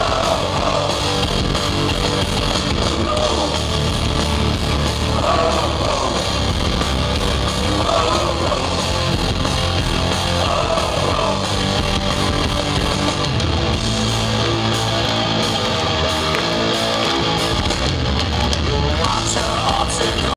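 A German medieval rock band playing a song live at steady, loud volume, heard from within the audience.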